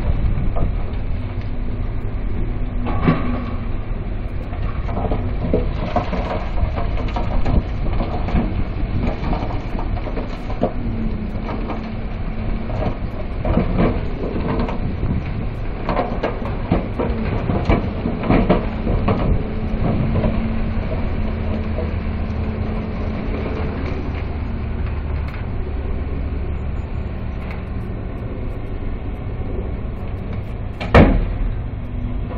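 Heavy diesel construction machinery running steadily while a dump truck tips a load of rock, which clatters and rumbles as it slides out. The clattering is densest through the first two-thirds and eases off near the end.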